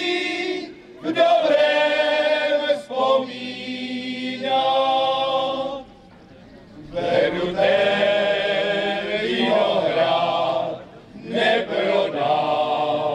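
Men's choir singing a Moravian folk song without accompaniment, in long held phrases with brief pauses for breath between them.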